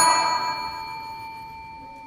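A small bell struck once, its clear ringing tone fading away over about two seconds. It is rung to halt a contestant's Quran recitation.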